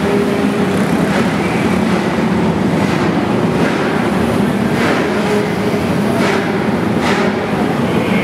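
Small race-car engines running steadily, a loud droning hum, with a few short sharp noises over it.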